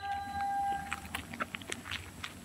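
Faint taps and scuffs of a marcher's shoes on asphalt during a foot-drill salute, over a faint steady tone that fades out about a second in.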